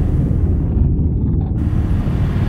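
Deep, steady low rumble of a cinematic logo-animation sound effect, with nearly nothing in the upper range, which drops out almost entirely about a second in.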